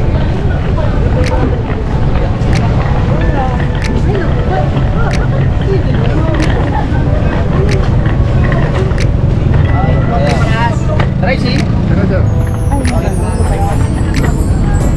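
Outdoor ambience of people talking nearby over a steady low rumble, with vehicles around.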